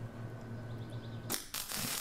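A MIG welder laying a single short tack weld on the steel bearing mount, heard as a hissing crackle for under a second starting about one and a half seconds in. Before it there is a steady low hum.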